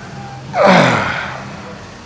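A single loud, breathy vocal sigh about half a second in, its pitch falling quickly from high to low before it fades away over about a second.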